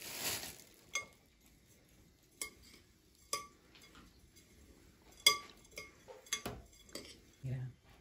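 Metal spoon stirring chopped nuts and desiccated coconut in a glass bowl, clinking against the glass about eight times at irregular intervals, each clink ringing briefly.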